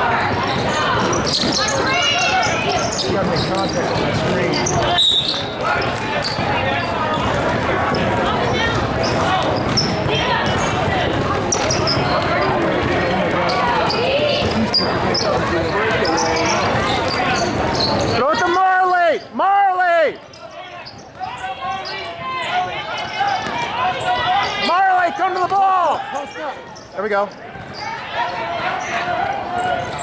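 Basketball game sounds: a ball bouncing on the court amid many overlapping voices of players and spectators calling out and shouting.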